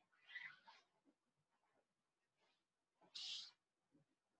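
Near silence: room tone, with a faint short sound just after the start and a brief faint hiss about three seconds in.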